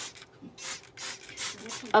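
Hand-held plastic trigger spray bottle misting water, about four quick hissing squirts in a row.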